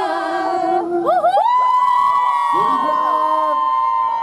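Unaccompanied singing voice through a PA: quick sliding vocal runs, then one long high note held for over two seconds that slides down at the very end.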